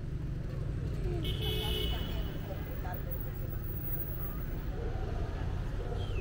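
Steady low rumble of riding a Onewheel over paving, with passers-by talking around it. About a second in, a brief high-pitched tone cuts through.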